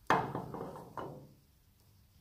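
A hitch lock knocking against a trailer's metal coupling head as it is fitted: one sharp knock at the start and a softer one about a second later.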